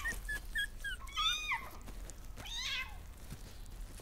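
Newborn kittens and a puppy crying while they suckle: a few short, high squeaks, then two longer squealing cries, the first about a second in and falling in pitch, the second a little past halfway.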